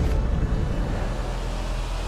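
Cinematic sound-design effect: a loud, steady rushing noise over a deep rumble.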